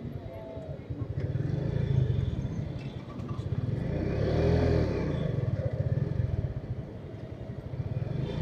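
Small single-cylinder motorcycle engine (TVS Metro Plus commuter bike) running as it rides slowly through town traffic, its note swelling louder through the middle.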